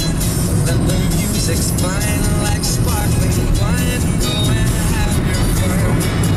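A song with a singer playing on a car radio, with a regular beat, over the low running noise of the car on the road.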